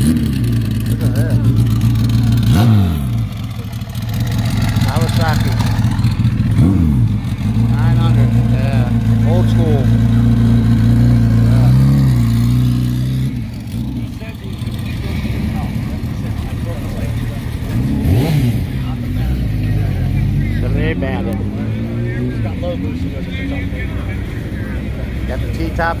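Motorcycle engine idling with several short revs, loud for the first half, then pulling away and getting quieter, with people talking around it.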